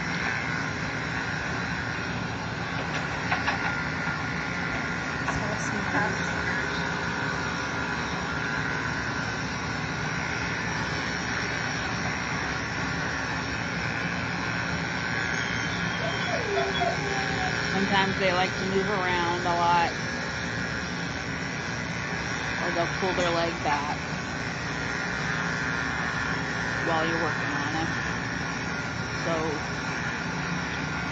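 Electric dog-grooming clippers running steadily as they shave a small dog's leg, a constant motor hum.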